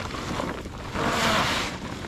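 A large tarp rustling and crackling as it is dragged up and over a dirt jump, with a louder swish about a second in.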